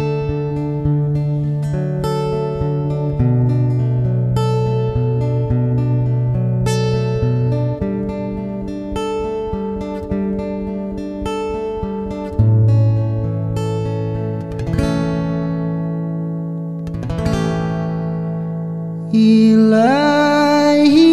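Acoustic guitar playing the instrumental introduction to a sholawat song: picked chords over held bass notes that change every few seconds. A singing voice comes in near the end.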